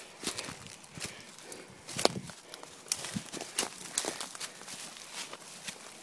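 Footsteps pushing through dense leafy undergrowth: irregular snaps, crunches and rustles of leaves and twigs underfoot.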